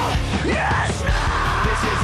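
Live rock band playing an instrumental passage: distorted electric guitars and drums, loud, with yelling over the music.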